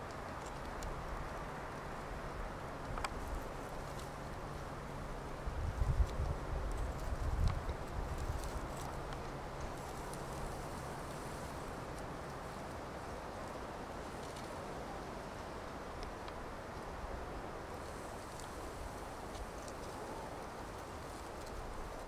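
Outdoor ambience: a steady hiss, with a faint low hum through the first half and a few dull knocks and bumps about six to eight seconds in.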